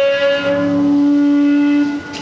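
Electric guitar note left ringing at the end of a song, one loud steady tone that cuts off near the end.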